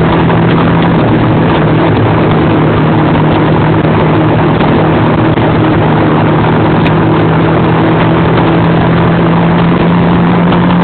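Four-wheeler (ATV) engine running loud and steady at an unchanging pitch while under way, heard from on board, under a constant rushing noise of wind and the ride.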